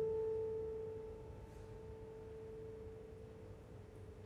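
A grand piano's final note, struck just before and held with the pedal, rings as a single pure tone and dies away slowly at the end of the piece.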